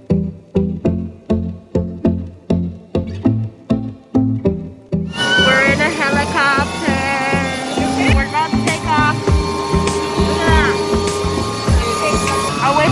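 Music with a plucked-string melody, about three notes a second. About five seconds in, it gives way suddenly to the loud, steady noise inside a helicopter cabin in flight, with voice or song lines over it.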